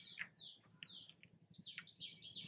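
Faint bird chirping: a run of short high notes, each sliding downward, several a second.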